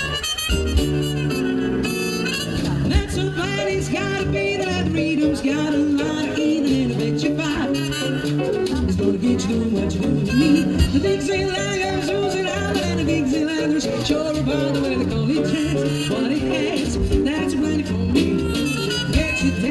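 A small live jazz band playing: harmonica over electric keyboard and drums, with a woman singing into a microphone.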